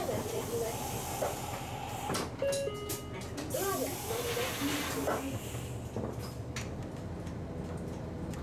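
Inside a city bus driving on a wet road in the rain: a steady hiss of tyres and rain over a low engine hum. The windscreen wipers sweep across the glass, with a short squeaky tone coming back about every four seconds.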